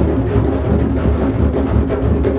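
Drumming music: many drums played together in a steady, dense rhythm with deep bass strokes.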